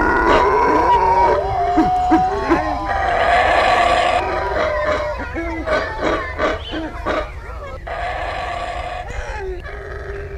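Howler monkeys howling, long wavering calls, while a man howls back through cupped hands. About four seconds in the sound changes abruptly to quieter calls among rustling clicks.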